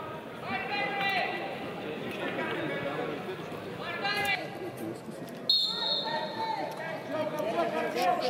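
Men's voices calling out in a large, echoing sports hall, and a short, high referee's whistle blast a little past the middle as the wrestling bout restarts.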